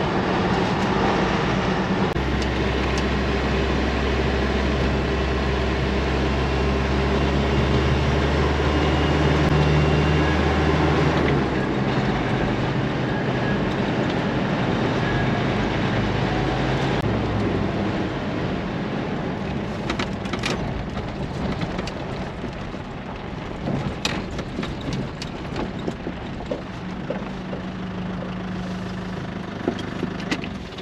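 Engine and road noise heard from inside a moving vehicle's cabin: a steady low drone. It changes about a third of the way in and grows quieter in the second half, with scattered clicks as it slows.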